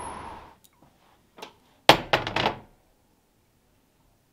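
Faint street noise that cuts off about half a second in, then about two seconds in one sharp thunk followed quickly by two lighter knocks.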